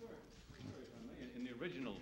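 Faint, distant speech: a man's voice off the microphones, a reporter starting to ask a question.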